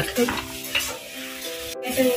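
Hot oil sizzling as the last batch of shakarpara deep-fries in a kadai, with a brief cut-out near the end.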